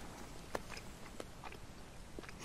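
A man chewing a mouthful of sandwich, with a few quiet, scattered clicks of the mouth.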